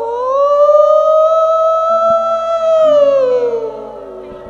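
A monk's voice holding one long sung note of Isan lae sermon chanting, amplified through a microphone. The note rises slightly, holds, then slides down and fades near the end, with low steady tones sounding underneath from about halfway.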